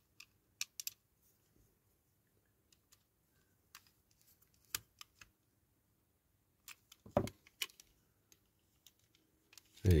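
Scattered light clicks and taps of a small screwdriver turning a screw into the base of a toy model car, with a few heavier knocks about seven seconds in.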